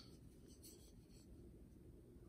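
Near silence: room tone, with a faint, brief light scratching about half a second in.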